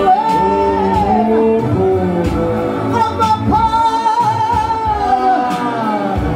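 A man singing into a microphone, with long wavering held notes. Short sharp clicks sound at intervals over the singing.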